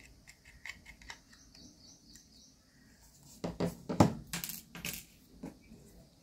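Small screwdriver backing out the screws of the metal mounting bracket on a 2.5-inch laptop hard drive: faint ticks, then a run of louder small metallic clicks and knocks from about three and a half seconds in.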